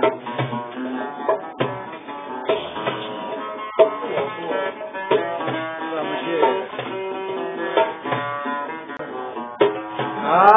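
Algerian mandole played as an instrumental passage in chaabi style: a run of plucked notes, each with a sharp attack and a short ring.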